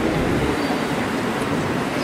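Steady city street noise: a continuous low rumble of traffic with the bustle of people on the pavement.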